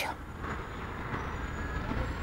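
Steady low rumble of city street ambience, with traffic-like noise, picked up by an outdoor microphone.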